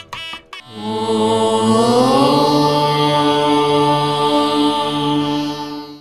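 A single long chanted 'Om', held for about five seconds, its tone shifting about two seconds in, then cut off abruptly. It follows a brief bit of devotional music with drum strikes at the start.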